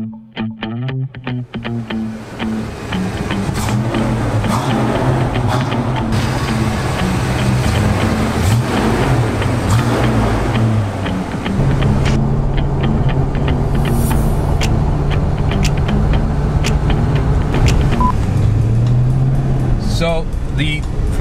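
Background music over the 5.0-litre V8 engine of a 1993 Ford Mustang SSP police car, which comes in about two seconds in. The engine runs and revs, rising and falling in pitch, then holds steady and climbs again near the end.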